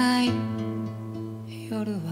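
Music: acoustic guitar playing in a folk song, with a held pitched note ending just after the start.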